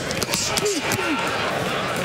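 Steady noise of a boxing arena crowd, with a couple of short voices rising out of it around the middle.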